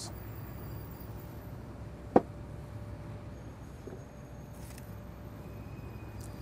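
Outdoor street-traffic background with a steady low hum, and one sharp click about two seconds in.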